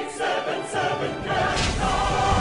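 Operatic-style choir singing a commercial jingle, settling into a long held chord about a second in, with low accompaniment swelling underneath.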